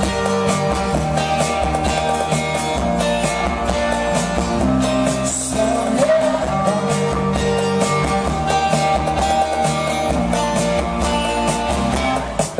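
An acoustic band playing live: guitar and other instruments with a singer's voice, at a steady full level.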